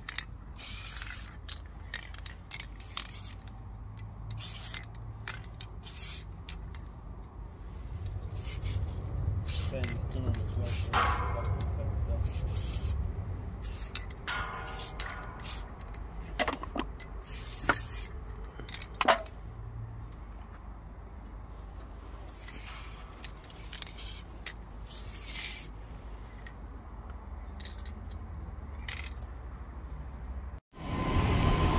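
Aerosol spray-paint can hissing in many short bursts and a few longer sweeps as letters are sprayed, with a low rumble swelling and fading in the middle.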